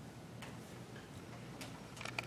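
Quiet room tone with a steady low hum and a few faint clicks, the clearest about half a second in and again past one and a half seconds.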